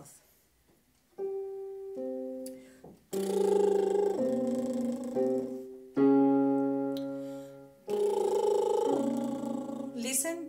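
Electronic keyboard playing single notes and chords while a woman does a lip-trill vocal warm-up, buzzing her lips on sung notes that step down. The trill comes in two phrases of about three seconds each, with a struck chord fading between them.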